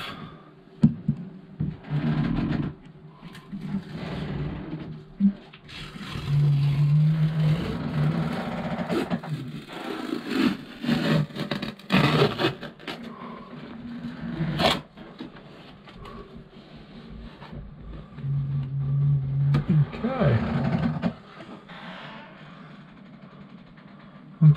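Peel ply being pried up and torn off a freshly cured epoxy repair on a fibreglass hull: irregular scraping and tearing noises with sharp snaps, the loudest snap a little past the middle.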